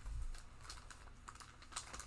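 Faint, irregular light clicks and taps, a few to the second.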